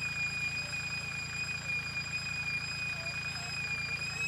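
Tractor engine running steadily, a low even rumble with a constant high-pitched whine over it.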